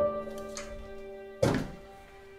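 Slow, sad piano score: a note struck at the start rings on and fades. About a second and a half in, a single dull thunk cuts in over it.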